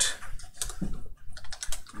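Computer keyboard typing: an irregular run of key clicks.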